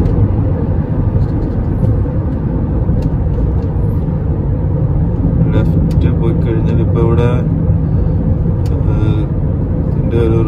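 Steady low rumble of road and engine noise inside a moving car's cabin at road speed. A voice speaks briefly a little past the middle and again near the end.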